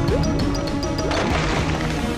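Cartoon soundtrack music playing throughout, with a short splash-and-crash sound effect about a second in as the lava splashes up.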